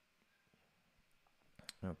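Near silence with faint room tone, then a couple of sharp clicks close together near the end, just before a man starts speaking.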